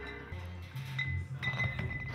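Glass cider bottles clinking, a ringing clink about a second in and another about half a second later, over background music.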